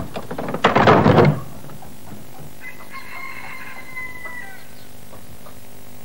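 Rooster crowing: a loud, harsh crow about a second in, then a fainter, drawn-out crow held on one pitch in the middle.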